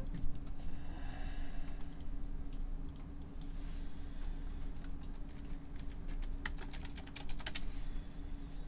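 Typing on a computer keyboard: irregular key clicks, a few scattered early on and a quick run near the end, over a steady low hum.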